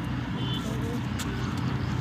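Steady low outdoor rumble with a faint low hum running under it, a brief faint high chirp about half a second in, and faint voices in the background.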